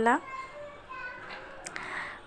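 Faint, distant children's voices in the background, just after a woman's voice trails off at the start.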